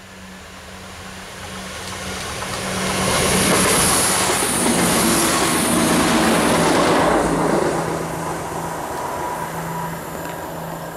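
Class 170 Turbostar diesel multiple unit passing at speed: its engine and wheel-on-rail noise build up, are loudest for a few seconds in the middle as the train goes by with a high hiss, then fade as it pulls away. Its low, steady engine note drops in pitch as it passes.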